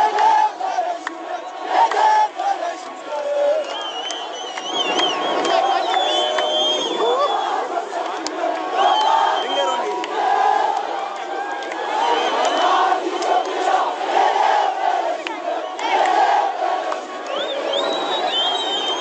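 A large crowd shouting and cheering together, many voices at once. High wavering calls cut through it from about four seconds in and again near the end.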